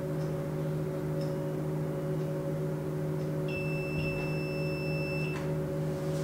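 Seta closed-cup flash point tester giving one steady, high electronic beep lasting nearly two seconds, starting a little past halfway: the alert that the test countdown has run out. Under it runs a steady low electrical hum.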